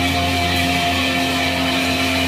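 Live rock band of electric guitars and bass playing held, ringing chords, with hardly any sharp drum or cymbal hits.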